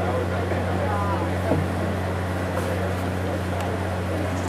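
Steady low hum with the indistinct chatter of spectators over it, and a voice briefly heard about a second in.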